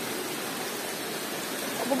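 Steady rush of flowing water from a rocky forest stream, an even hiss with no break.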